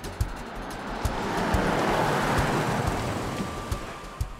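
A car drives past, its noise swelling to a peak and fading away over about three seconds, with background music keeping a steady low beat underneath.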